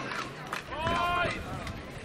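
Players' voices calling out on an outdoor pesäpallo field, with a drawn-out shout about half a second in among shorter calls.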